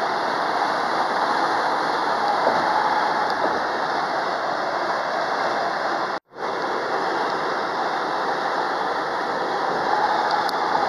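Steady road and tyre noise heard inside a moving car's cabin at highway speed. The sound drops out completely for a split second about six seconds in, then comes back unchanged.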